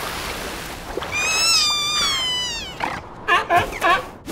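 A cartoon seal character's voice: a high, whining cry held for about a second and a half that falls in pitch at its end, followed by a few quick chattering squeaks. A rushing noise comes before it in the first second.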